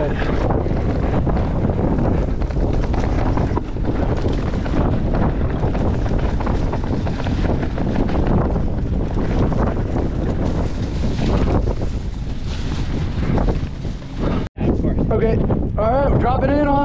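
Wind rushing over a helmet-mounted camera microphone on a fast mountain-bike descent, with the tyres and bike rattling over a dirt trail. Near the end the sound cuts out for an instant.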